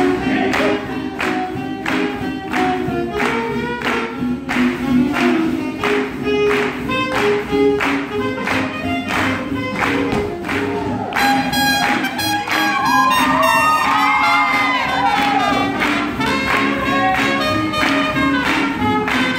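Live swing jazz band playing an up-tempo tune with a steady beat.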